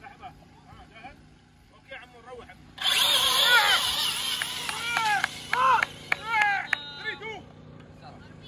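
RC buggy launching flat out up a sand hill climb: a loud rushing motor-and-tyre noise starts suddenly about three seconds in and lasts about four seconds before dropping away. Voices call out over it.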